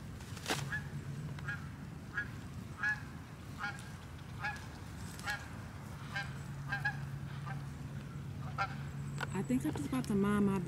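Canada geese honking: a run of short, repeated calls about one a second, over a steady low hum. A single sharp click comes about half a second in.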